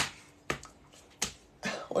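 Sharp clicks made by hand, four of them evenly spaced in about two seconds, followed near the end by a breath and the start of a voice.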